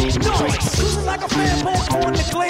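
Turntable scratching over a hip-hop beat: a record worked back and forth in quick sliding strokes near the start, then the beat running on.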